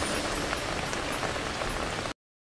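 Tail end of a song track: a steady hiss like rain, with no melody, left after the music stops. It cuts off abruptly right at the end.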